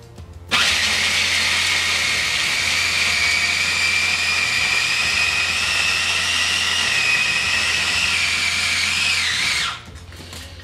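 Food processor motor running steadily as it grinds roasted peanuts, sugar and oil, the nuts breaking down from crumbs into a paste. It starts about half a second in and stops just before the end, with a steady high whine that dips slightly just before it cuts off.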